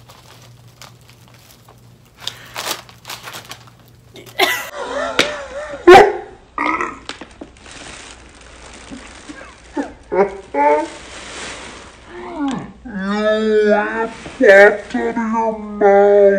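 A woman gagging and retching, with a loud wavering throat sound about four to six seconds in, then more strained voice noises and groans toward the end.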